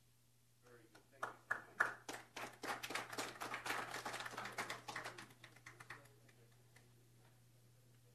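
A small group applauding: claps start about a second in, build into steady applause and die away at about six seconds.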